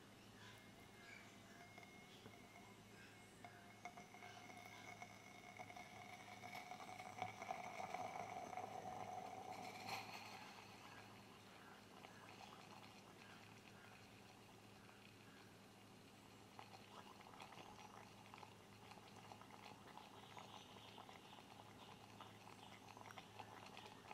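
Faint sound of calcium hydrogen carbonate solution boiling in a glass test tube over a burner flame, with a faint slowly rising tone that swells about a third of the way in, over a low steady hum. The boiling drives its decomposition back to calcium carbonate.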